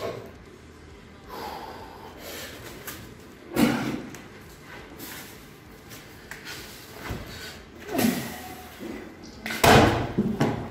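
Strongman lifting a 205 kg atlas stone: heavy breaths and strained grunts during the lift. Near the end comes the loudest sound, a heavy thud as the stone lands on the wooden-topped platform.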